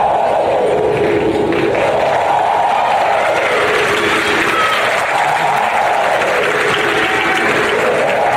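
Audience applauding and cheering in a hall, a steady wash of clapping and crowd voices.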